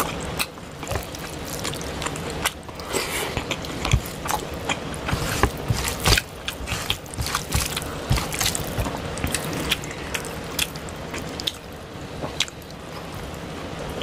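Close-miked eating sounds: fingers squishing and kneading rice with tilapia fish curry on a plate, an irregular string of small wet clicks and squelches.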